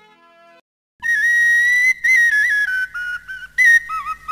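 Film soundtrack music. A fading phrase dies away, there is a brief silence, and about a second in a high wind-instrument melody with sliding notes enters over a faint low accompaniment.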